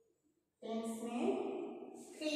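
A woman's voice speaking, starting a little over half a second in after a brief quiet.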